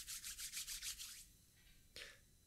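Palms rubbed briskly together in quick, even back-and-forth strokes, faint and hissy, stopping about a second in.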